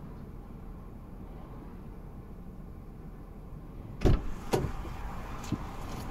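A car's engine idling, heard as a steady low rumble inside the cabin. About four seconds in there are two sharp knocks close to the microphone, then a few lighter clicks.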